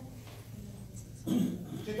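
Quiet room tone for about a second, then a short burst of a person's voice about a second and a half in.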